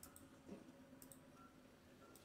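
Near silence with a few faint computer-mouse clicks: a pair at the start and another pair about a second in, as an item is picked from a dropdown menu.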